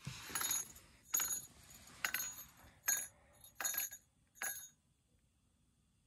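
Ice-fishing rattle reel jingling in about six short, irregular bursts of metallic ringing as a fish takes the bait and pulls line: the sign of a bite.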